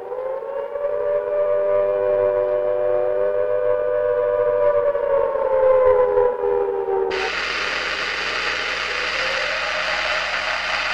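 Several layered, siren-like wailing tones held and bending slowly up and down in pitch, part of a rock recording's intro. About seven seconds in they cut off suddenly and a loud, hissing wash of noise takes over.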